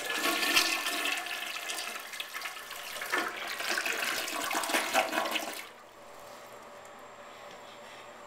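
Kohler Highline toilet flushing: a loud rush of water through the bowl lasting about six seconds, which drops off sharply to a quieter steady hiss near the end.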